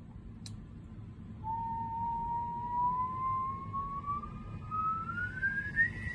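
A single whistle-like tone that starts about a second and a half in and rises slowly and steadily in pitch.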